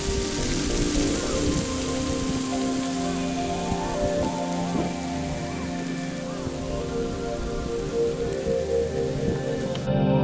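A steady rushing hiss of outdoor weather noise that cuts in and out abruptly, with soft ambient music running underneath.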